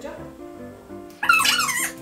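Light background music with steady, stepping notes, then about a second in a short, loud, high-pitched wavering voice-like sound.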